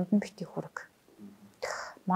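A woman speaking softly, close to a whisper, her voice trailing off into a short pause, then a breathy, whispered sound near the end.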